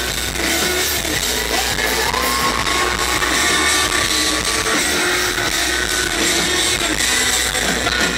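Live rock band playing loud and without a break: drums, electric guitar and keyboards, with bending, held melodic lines over the top.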